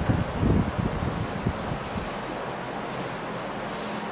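Steady room hiss with a faint low hum, and a few low, muffled thumps in the first second and a half.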